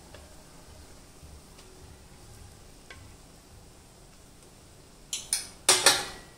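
Faint frying sizzle from vegetables in a pan as boiled noodles are tipped in, then a few sharp clattering knocks of utensils against the pan near the end.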